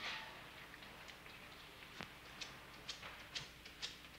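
Low hiss with a few faint, scattered clicks, mostly in the second half.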